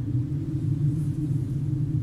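A low, steady droning rumble with nothing in the higher range, the low intro ahead of the song.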